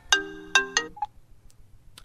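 iPhone ringtone sounding for an incoming call: a few struck, pitched notes that cut off under a second in as the call is answered with a two-finger double tap, followed by a single short beep.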